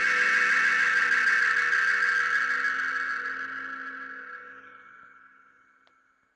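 Closing background music ending on a held chord, steady for about three seconds, then fading out to near silence.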